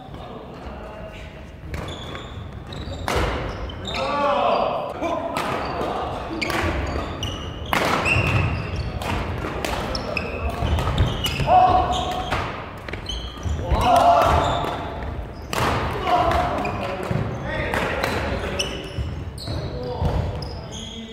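Badminton doubles rallies in a large hall: sharp racket-on-shuttlecock hits, irregular and often a second or less apart, with footfalls on the wooden court and players' short shouts.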